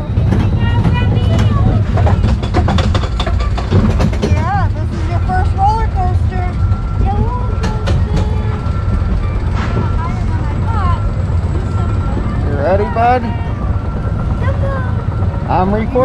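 Goofy's Barnstormer junior roller coaster train running along its steel track, a steady low rumble with a rapid run of clicks and rattles in the first few seconds. People's voices rise over it in the middle and near the end.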